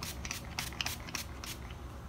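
Pump spray bottle of facial mist being pumped rapidly, a quick series of short hissing spritzes, several a second, as the face is sprayed all over.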